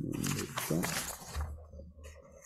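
A man's low, wordless murmur close to the microphone, with the rustle of paper pages being leafed through.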